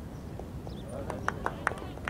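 A low rumble runs throughout. From about a second in, a quick, uneven series of sharp taps comes at several per second.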